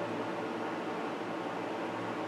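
Steady room tone: an even hiss with a low hum underneath and no distinct event.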